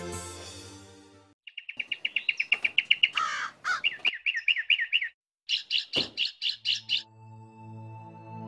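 Birds calling: a fast run of repeated high chirps, then after a brief break a second, sharper chirping series with one lower call among them. Soft music fades out at the start and returns near the end.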